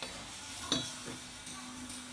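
Metal mould parts for rubber dumbbell heads knocking together as a mould ring is set in place: one sharp clink with a brief high ring about two-thirds of a second in, then a softer knock. A low steady hum starts with the clink.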